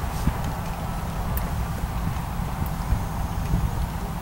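Hoofbeats of a dressage horse on sand arena footing, heard over a steady low rumble.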